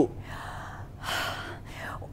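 A woman's breath drawn audibly twice without voice, the second, about a second in, louder.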